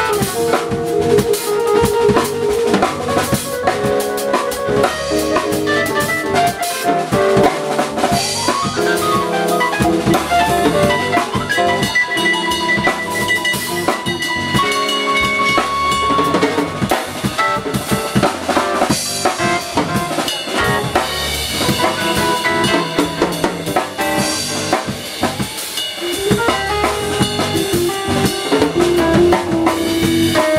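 Live jazz quartet playing: keyboard chords and runs on a Yamaha Motif XS8 over a drum kit and upright bass, without a break.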